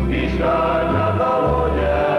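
Music: a group of voices singing together over sustained chords, with a bass line stepping to a new note about every half second.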